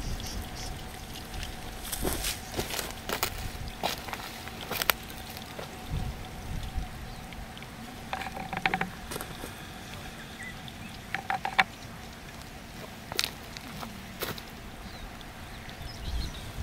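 Plastic drip irrigation tubing and its emitter being handled, with scattered light clicks and knocks over a quiet outdoor background, and two brief faint calls about halfway through.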